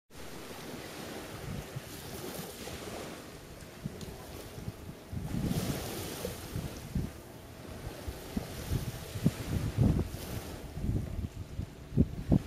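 Wind buffeting the microphone over a steady wash of sea water and surf. The gusts grow stronger about five seconds in and again near the end.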